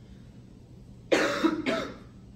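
A person coughing twice in quick succession about a second in, the first cough longer than the second.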